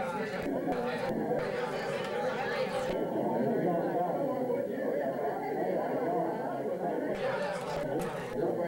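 Chatter of many people talking at once in a room, with overlapping voices and no single clear speaker.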